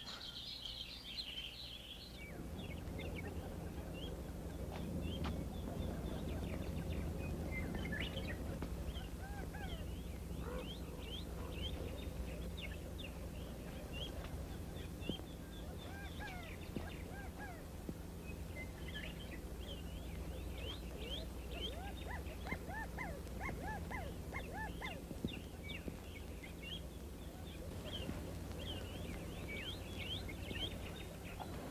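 Outdoor country ambience: small birds chirping over and over in short calls, with some lower calls in the second half, over a steady low hum.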